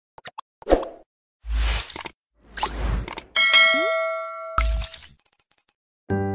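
Edited intro sound effects: a few clicks and a hit, two rushes of noise, then a ringing bell-like chime with a short rising tone about three and a half seconds in, a last hit and a scatter of small ticks.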